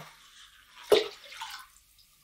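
Liquid poured from a small plastic cup into a plastic bucket of water: a sharp, drip-like click about a second in, then a faint, brief splash.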